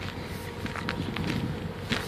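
Footsteps of a person walking on rough ground, irregular crunching steps with a sharper one near the end, over a faint steady hum.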